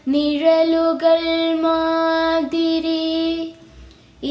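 A solo voice singing a Malayalam poem to a slow melody in long, held notes, fading to a pause near the end.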